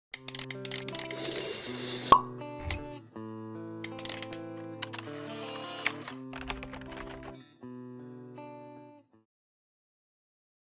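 Intro jingle of held synthesizer chords laid with quick pops, clicks and whoosh effects. It stops about nine seconds in.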